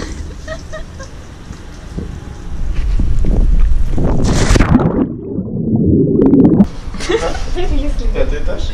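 A person jumping into a swimming pool: a big splash about four seconds in, then about a second and a half of muffled underwater gurgling.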